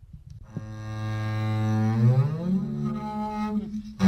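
A bowed double bass playing a glissando: a low note swells for about a second and a half, then slides smoothly up in pitch to a higher note, which is held and fades out.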